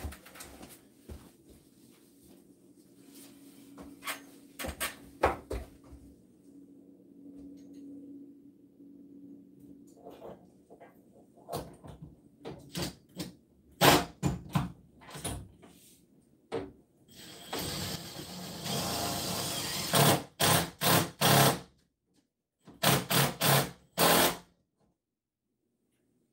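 Knocks and clicks of hardware being handled, then a power driver running for about three seconds and in several short bursts, driving lag bolts into the wall to fasten a barn-door rail. The sound cuts off abruptly twice near the end.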